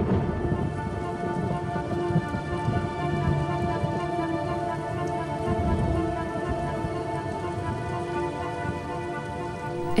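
Heavy rain falling steadily, with low rumbles of thunder, under background music of long held chords.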